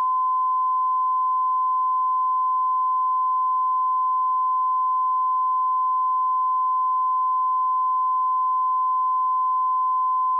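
Steady 1 kHz reference tone, the line-up tone recorded with colour bars on a videotape, held at one unbroken pitch and constant level.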